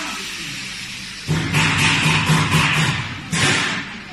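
QD-350 meat dicing machine running with a steady motor hum. About a second in, a louder pulsing mechanical clatter from the cutting mechanism starts, about four pulses a second. It breaks off and comes back once briefly near the end.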